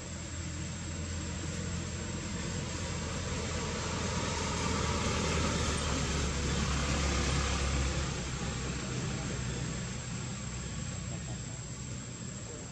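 A motor vehicle passing by: a low rumble and road noise that swell to a peak about seven seconds in and then fade, over a steady high-pitched tone.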